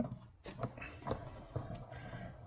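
Faint, irregular clicks and light knocks from the handwheels and crank handle of a cast-iron cross slide milling table as they are gripped and turned by hand.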